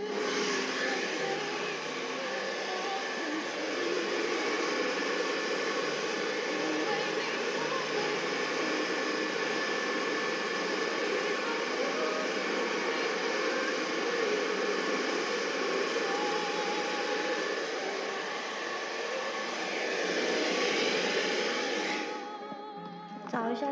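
Steady, loud rushing of blown air from a small electric blower, with a faint motor whine; it stops near the end.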